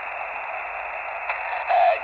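Lab599 Discovery TX-500 HF transceiver on receive in sideband on 20 metres: steady band hiss squeezed into the narrow voice passband of its SSB filter. Near the end, the answering station's voice starts to break through the noise.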